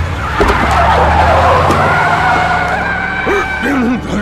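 Cartoon sound effect of a mail van skidding: a long tire screech over a low engine rumble, lasting about three seconds and stopping just before the end.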